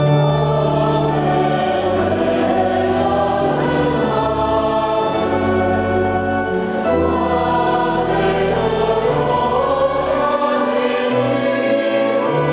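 Mixed choir of men's and women's voices singing a sacred piece, accompanied by an organ-voiced keyboard holding long bass notes that change every two to four seconds.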